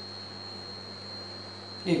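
Steady electrical mains hum with a thin, high-pitched whine above it.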